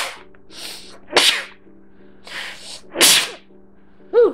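A man sneezing three times in a row, each loud sneeze coming a second or two after the last, with a quieter breath drawn in before each.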